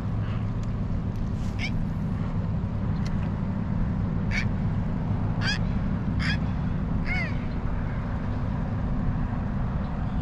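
A bird calling over the river: about five short, high calls, spread between about two and seven seconds in, over a steady low rumble.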